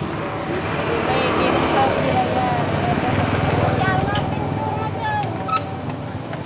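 Indistinct voices over a steady low background rumble, with a few short high squeaks about four and five seconds in.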